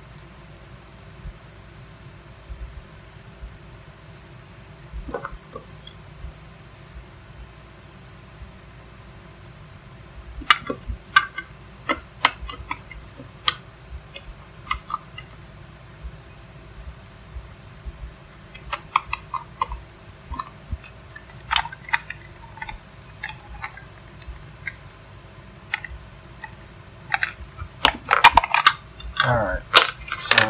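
Sharp clicks and taps of a hard plastic 50-amp plug housing being handled and fitted together onto the cord. They are scattered from about ten seconds in and come thicker near the end, over a steady low hum.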